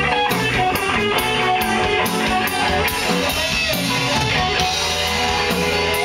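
Live rock band playing an instrumental passage: electric guitar lines over bass and a drum kit keeping a steady beat.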